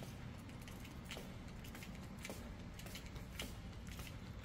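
Quiet room tone with a faint steady hum and a few faint ticks, roughly one a second.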